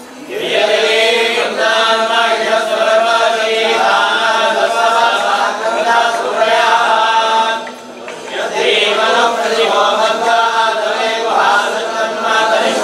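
Priests chanting mantras together in a steady, sustained recitation, breaking off briefly about eight seconds in before starting again.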